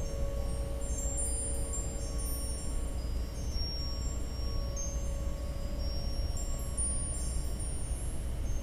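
Ambient meditation music: a steady low drone under held middle tones, with scattered high chime tones that ring out and fade.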